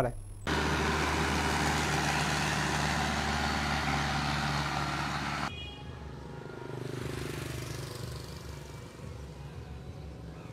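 A motor vehicle's engine running steadily with a low hum. It cuts off abruptly about five seconds in, leaving quieter outdoor ambience.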